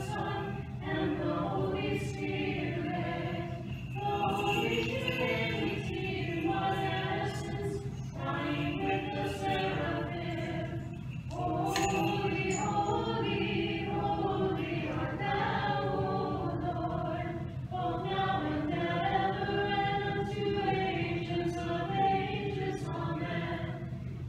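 Orthodox church choir singing a cappella, sustained chanted phrases that break every few seconds.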